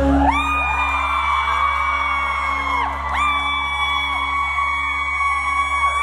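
A fan's high-pitched screams: two long shrieks, each held about three seconds, over the song's sustained closing music.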